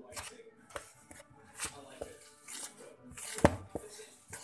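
Hands mixing bread ingredients in a plastic mixing bowl: a run of short scraping and rustling strokes, with a sharp knock against the bowl about three and a half seconds in.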